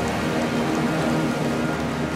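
Audience applauding, a dense even clatter of clapping, over the orchestra holding sustained chords.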